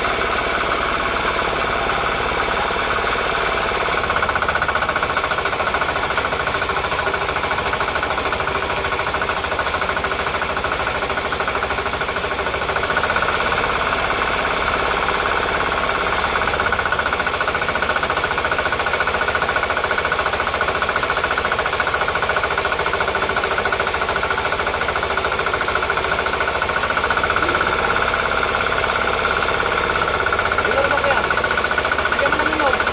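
Small stationary engine running steadily, driving a self-priming centrifugal water pump while the pump primes, before water reaches the outlet.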